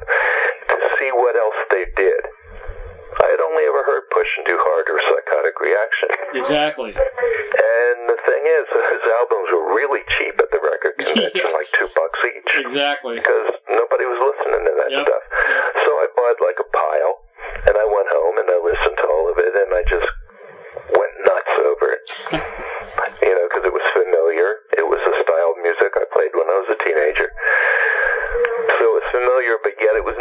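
Speech only: a voice talking steadily over a narrow, telephone-quality line, with short pauses.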